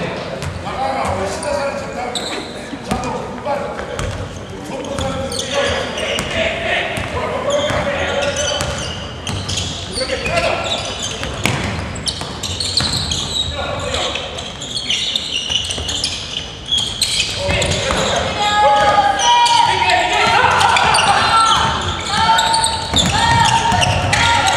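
A basketball bouncing on a hardwood gym floor as it is dribbled, with voices calling out in an echoing gymnasium; the voices get louder about two-thirds of the way through.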